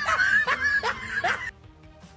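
A woman laughing nervously in several short bursts, dying away about one and a half seconds in.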